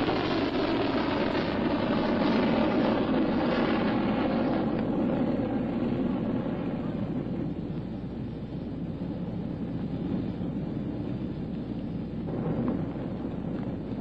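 Solid-fuel rocket motor of a Polaris missile at lift-off: a loud, continuous rushing noise that loses its higher part and slowly fades as the missile climbs away.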